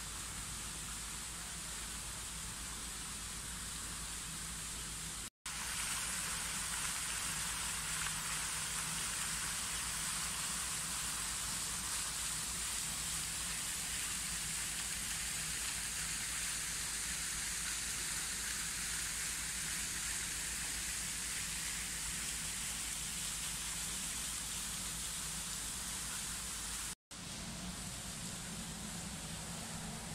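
Steady outdoor hiss with a faint low hum underneath, broken by two brief dropouts to silence, about five seconds in and near the end.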